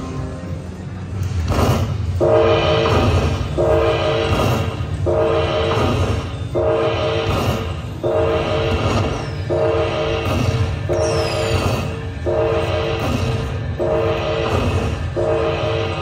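Dragon Link slot machine playing its bonus-collection tally sound: a short chime chord repeating about every second and a quarter as each fireball's prize is added to the win meter, over a steady low background hum.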